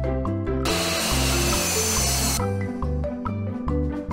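Upbeat mallet-percussion background music with a steady beat, and for about two seconds in the middle a miter saw cutting through a 2x4, a loud rush of noise that starts and stops abruptly.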